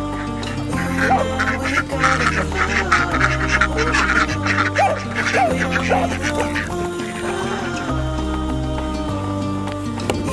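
Domestic ducks quacking in a rapid, crowded run of calls, starting about a second in and stopping a little past halfway, over background music with a steady bass line.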